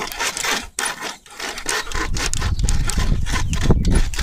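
A hand saw cutting through a log, pulled back and forth by two people in repeated rasping strokes, with a low rumble underneath in the second half.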